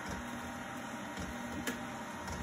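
KitchenAid stand mixer running at its lowest speed with the ice cream maker attachment, its motor giving a steady low hum as the dasher churns freshly added cream in the frozen bowl. A single light click about one and a half seconds in.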